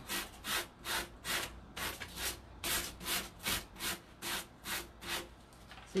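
Hand sanding along the edge of a wooden tabletop, rubbing off the overhanging decoupage paper so it trims cleanly along the edge. The strokes are short and even, about two or three a second, and stop a little before the end.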